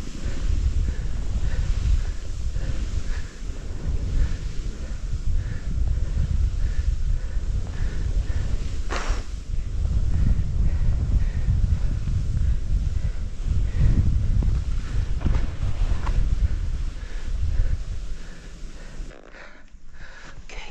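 Wind buffeting the camera microphone during a ski descent in powder snow, a dense, gusting low rumble over the hiss of skis running through snow, with a short, brighter rush about halfway through.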